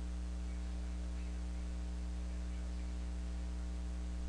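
Steady electrical mains hum, a low constant buzz with overtones, over a faint hiss.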